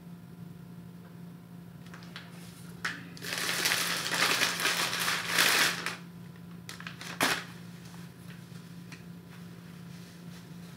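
Plastic mailer bag crinkling loudly as a T-shirt is pulled out of it, for about three seconds starting about three seconds in, then one more short crinkle about seven seconds in.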